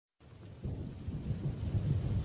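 Rain and low rolling thunder, a stormy ambience fading in after a moment of silence and growing louder.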